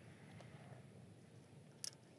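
Near silence, with a single short sharp click near the end.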